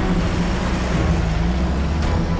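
A vehicle engine running with a steady low hum as an SUV pulls up.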